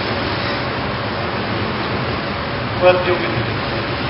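Steady hiss of background noise, with a short burst of a voice about three seconds in.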